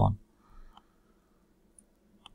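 A couple of faint, short clicks from a computer mouse, in an otherwise quiet room.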